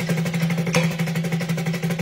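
Snare drum played in steady sixteenth notes at 180 BPM, about twelve even strokes a second from loose wrists, blending into a continuous buzz over a steady low ring from the drum.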